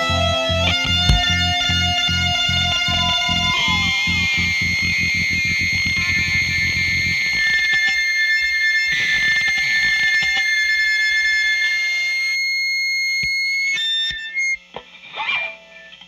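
Ohio punk rock band's recorded song with distorted electric guitar, ending: a fast pounding rhythm in the low end stops about halfway through, leaving held, ringing guitar notes that cut off near the end, followed by a few faint scattered guitar noises.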